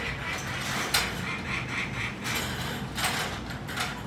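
A peregrine falcon calling in a series of short repeated notes, with a sharp knock about a second in.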